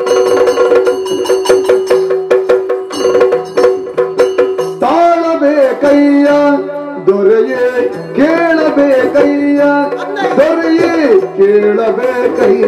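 Yakshagana ensemble music: a maddale drum beaten in quick strokes over a steady drone. About five seconds in, a singer joins with long, sliding, ornamented phrases while the drumming goes on.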